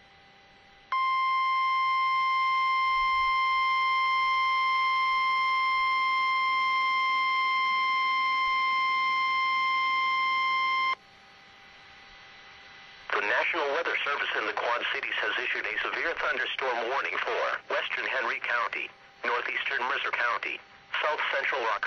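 Emergency Alert System attention signal: a single steady tone, the National Weather Service's 1050-hertz warning alarm tone, holds for about ten seconds and then cuts off sharply, announcing a weather warning. About two seconds later a voice on the broadcast starts reading the warning.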